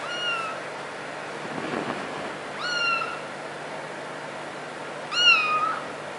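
A kitten meowing three times, short high-pitched mews about two and a half seconds apart, each sharply rising then easing off. The last one is the loudest and longest.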